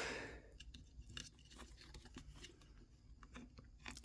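Faint handling noise: a heavy wire and cable being worked through a plastic foot-switch housing, with scattered light scrapes and small clicks.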